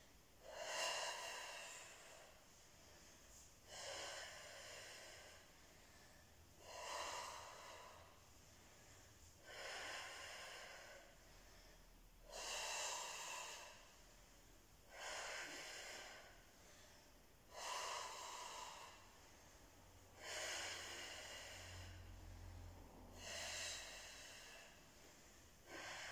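A woman's forceful exhales, about nine in all, one roughly every three seconds. Each is a short, sharp breath out that starts suddenly and fades, timed to the effort of each twisting crunch.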